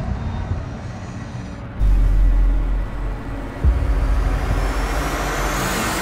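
Trailer sound design: a low rumbling drone, a heavy deep bass hit about two seconds in and another sharp hit near four seconds. Then a hissing riser swells upward and cuts off suddenly.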